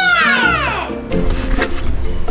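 A child's excited drawn-out exclamation, one call that falls in pitch over most of a second, at the start, over background music.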